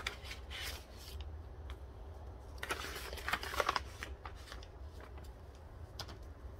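Paper and packaging rustling and crinkling as a printed information pack and its inserts are handled and leafed through, in two bursts: at the start and again about three seconds in, over a steady low hum.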